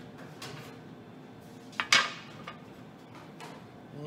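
A sharp metallic clatter about halfway through, a small metal tray being set down on a wooden cutting board, among a few fainter knocks of kitchenware being handled.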